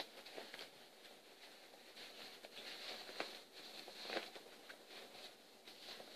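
Faint rustling with a few soft, scattered taps of cloth being handled as a small pair of baby pants is worked onto a doll.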